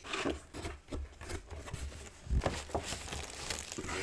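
Cardboard keyboard box being opened and handled, then a keyboard in a plastic bag lifted out of it, the plastic crinkling, with a few light knocks about halfway through.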